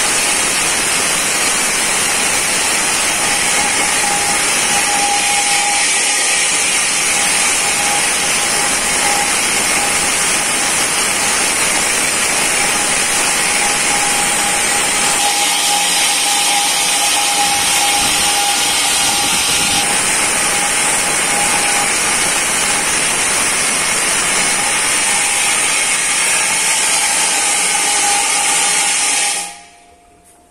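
Corded electric drill with a large core bit running steadily as it bores a hole through a wall: a loud, even grinding noise with a steady whine on top. It stops shortly before the end.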